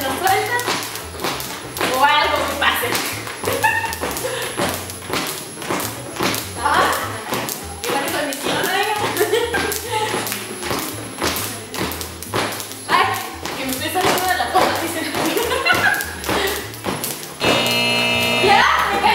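Jump ropes slapping a tiled floor with many quick, repeated taps as several people skip at once, over music with singing.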